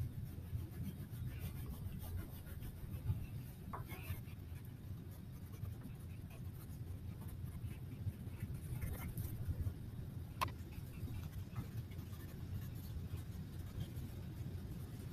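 Wax crayon rubbing and scratching on paper as a shell shape is colored in with back-and-forth strokes, faint and continuous. A single sharp click comes about ten seconds in.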